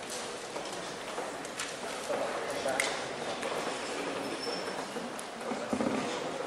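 A man speaking, lecturing through a handheld microphone, with a few short clicks in the room.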